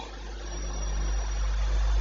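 A steady low hum or rumble with faint hiss, slowly growing louder.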